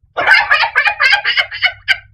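A man's loud, high-pitched cackling laugh: a rapid run of short bursts that stops just before the end.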